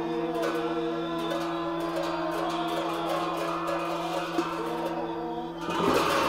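Gyaling, Tibetan ceremonial reed horns, playing a wavering melody over a steady low drone.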